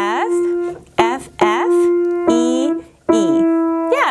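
Piano playing the F above middle C about five times in a slow, uneven rhythm, each note ringing on. A woman's voice calls out with each keystroke.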